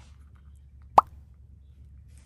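A single short cartoon "pop" sound effect about a second in, its pitch rising quickly, over a faint steady room hum.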